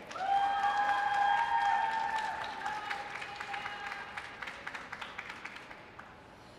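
Audience applauding, with long, high held cheers over the clapping for the first three seconds or so; the applause thins and fades out near the end.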